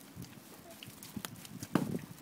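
Small boots stepping in wet snow: a few irregular soft crunches and thumps, the loudest near the end.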